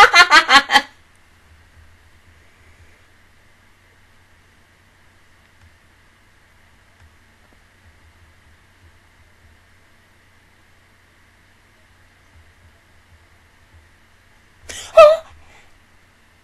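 A woman's loud burst of laughter into a close microphone, quick even pulses that stop under a second in. Then a long quiet stretch with a faint steady hum, broken near the end by one short, sharp vocal outburst.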